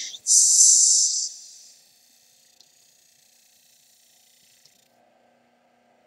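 Small plastic packet rustling as a peridot is taken out of it: a loud rustle of about a second that fades away, followed by only a faint hum.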